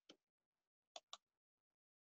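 Near silence with a few faint, short clicks: one at the very start and two close together about a second in.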